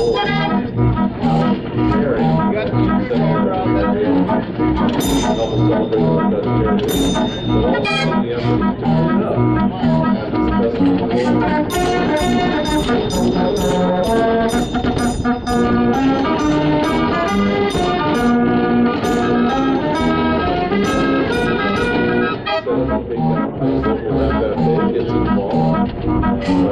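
Dutch street organ playing a tune: loud, steady pipe-organ melody and chords over a regular percussion beat.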